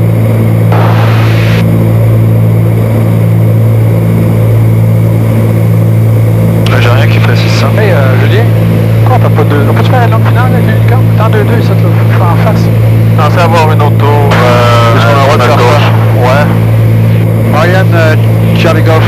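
Cabin drone of a Cessna 310Q's two six-cylinder piston engines and propellers in cruise flight, a loud steady low hum with a slow, even pulsing in it.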